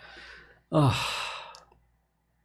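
A man sighing once: a breathy exhale, voiced and falling in pitch, fading out after about a second, preceded by a faint intake of breath.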